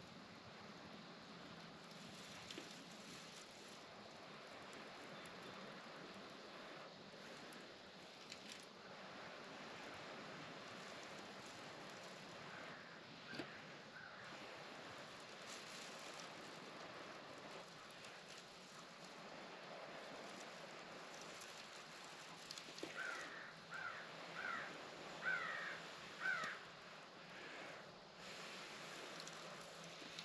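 Faint steady outdoor hiss; from about 22 seconds in, a crow caws about six times in quick succession.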